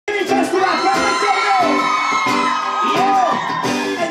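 Live band playing amplified music: a long high note held over a steady rhythmic backing, with gliding pitched lines above it.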